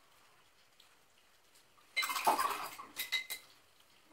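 A paintbrush clattering and knocking against a glass rinse jar: a rattling clatter about halfway through, then two sharp, ringing clinks.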